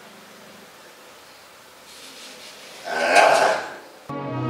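Low steady hiss of room tone, then a brief burst of a person's voice near the end.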